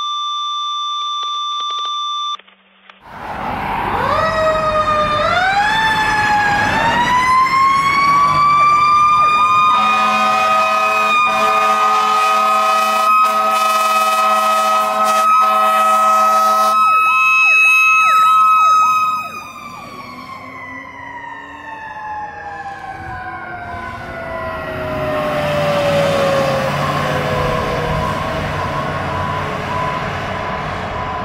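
A steady electronic beep tone for about two seconds, then a fire engine's mechanical siren winding up in steps to a steady wail, with horn blasts and a fast warbling siren over it. Just past the middle the sound drops in level and the mechanical siren winds down slowly, while a second siren pulses near the end.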